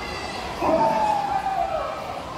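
A child's voice over the stage loudspeakers giving one long howl that starts about half a second in and falls slowly in pitch, a wolf's howl in a chicken-and-wolf skit.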